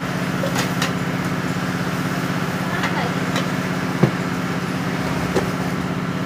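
A steady low mechanical hum, engine-like, with a few sharp clicks and knocks over it; the loudest knock comes about four seconds in.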